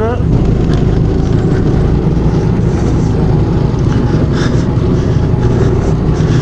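Go-kart engine running steadily at speed, heard from on board the kart, a dense low drone with no pauses.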